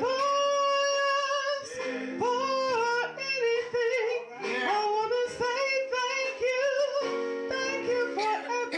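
A woman singing a gospel solo into a microphone, holding long notes with vibrato and sliding between pitches, over steady low sustained accompaniment.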